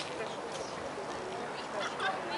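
Indistinct voices of people talking, heard over a steady wash of outdoor background noise.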